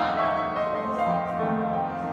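Upright piano being played: a slow passage of held notes, with the melody and bass moving every half second or so.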